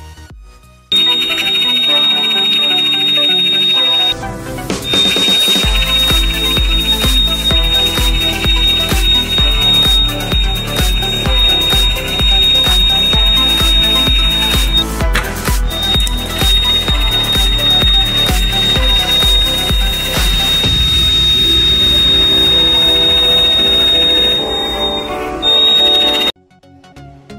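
Homemade door alarm's electronic buzzer sounding one steady high-pitched tone that cuts out briefly twice, over electronic background music with a bass beat.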